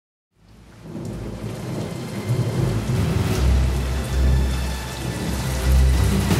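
Rain and rumbling thunder fading in after a moment of silence, with deep sustained bass tones swelling underneath from about halfway in, as the intro of a rap track.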